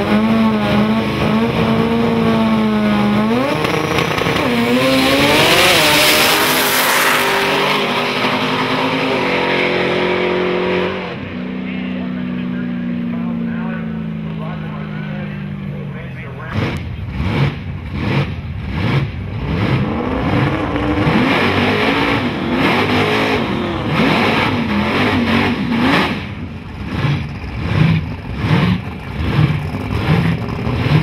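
Two drag cars launching and accelerating hard down the strip, engine pitch climbing and dropping back at each gear change, then fading out as they run away downtrack about halfway through. Afterwards come choppy, uneven engine revs and voices from the next cars near the starting line.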